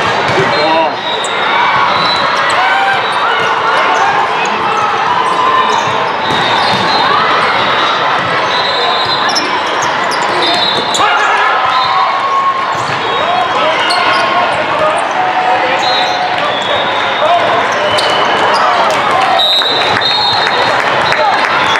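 Indoor volleyball play in a large, echoing hall: the ball being struck again and again, sneakers squeaking on the court, and players' and spectators' voices, with many short sharp knocks throughout.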